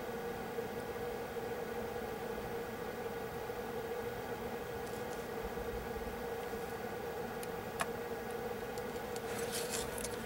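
Steady low hum with faint higher tones, with one short light click about eight seconds in and a little soft rustling near the end.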